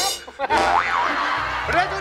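A cartoon-style 'boing' sound effect with a wobbling pitch that swoops up and down, laid over music, about half a second in. A short spoken word follows near the end.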